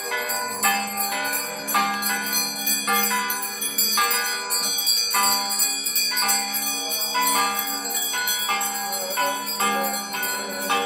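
Brass band, with tuba and trumpets, playing a hymn, mixed with a constant jingle of hand bells.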